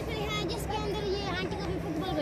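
Children's voices calling and chattering at a distance during outdoor play, over a low steady hum.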